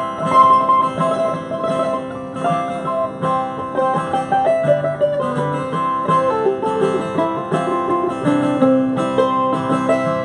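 Mandolin picking a melody over a strummed acoustic guitar: an instrumental break in a folk song.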